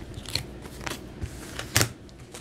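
Tarot cards being handled on a table: a few short rustles and clicks of card stock, the sharpest one near the end.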